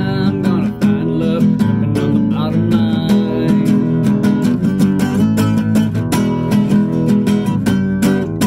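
Acoustic guitar strummed in a steady rhythm, an instrumental break between the verses of a country song.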